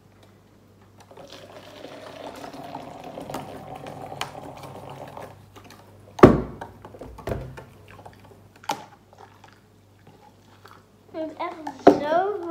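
Hot water poured from a glass electric kettle into a plastic container: a steady splashing for about four seconds whose pitch slowly rises. Then a single sharp knock as the kettle is set down, followed by a few light taps and clicks.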